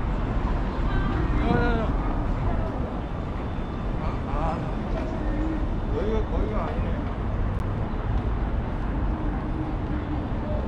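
City street ambience: a steady rumble of road traffic, with brief snatches of passers-by talking a few times.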